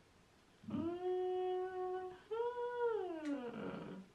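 A woman's voice holding two long wordless notes: the first steady for over a second, the second rising slightly, then sliding down as it fades.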